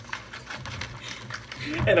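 Foil wrappers of Hershey's Kisses crinkling as they are unwrapped by hand, an irregular run of small crackles and clicks. A voice comes in near the end.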